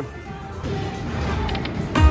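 Buffalo Link video slot machine playing soft electronic tones over the steady din of a casino floor, with a few quick high ticks near the end.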